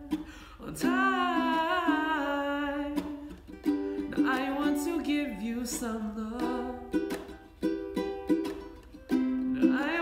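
Fender ukulele strummed in a steady chord rhythm, with a man's voice singing along without words over it.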